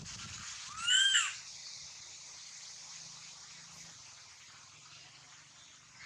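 Baby macaque giving one short, high call about a second in, its pitch rising and then falling.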